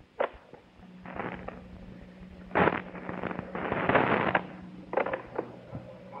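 Tape recorder being worked as a radio-drama sound effect: a click of a control key, then a steady motor hum, with bursts of rushing noise as the tape winds, and two more clicks near the end as playback is set.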